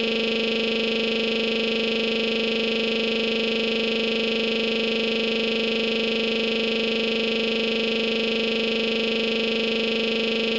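A steady, unbroken electronic buzz: one low pitch with many overtones, never changing in pitch or loudness.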